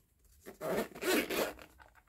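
Zip on a fabric-covered hard-shell glasses case being pulled open, a rasping run of a few quick strokes that starts about half a second in and lasts just over a second.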